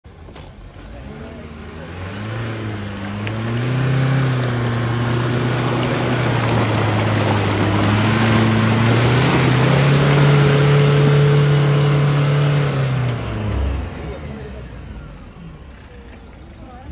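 Isuzu D-Max V-Cross pickup's engine revved hard and held at high revs while the truck is stuck in mud, with a strong hiss over it; the revs step up again about ten seconds in, then fall away a couple of seconds before the end.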